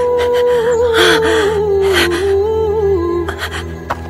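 Background music: a slow, wordless melody of long held notes, like humming, over a low steady drone.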